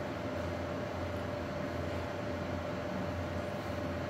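Steady background room noise: a constant low hum with a thin steady whine above it, unchanging throughout.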